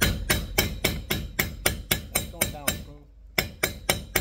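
Hammer tapping a freezer-chilled bearing down into a heated lawn mower idler arm, steady light strikes about four a second. After a short pause near the end come a few quicker taps as the bearing seats even with the race.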